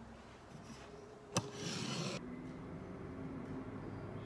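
A single sharp click about a third of the way in, followed by a short scraping hiss that stops abruptly, from the aluminium roller blind tube being handled on a table; after that only a faint steady hum.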